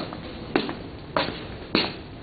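Four footsteps on a concrete shop floor, evenly spaced about two-thirds of a second apart.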